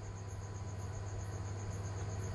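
Faint background: a steady low hum with a high-pitched chirping tone pulsing evenly, about nine pulses a second.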